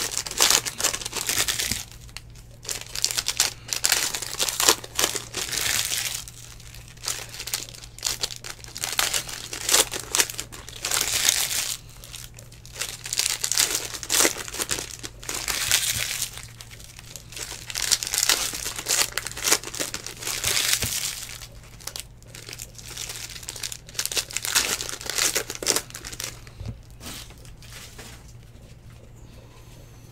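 Foil trading-card pack wrappers being torn open and crinkled by hand, in repeated irregular bursts every second or two, over a faint steady low hum.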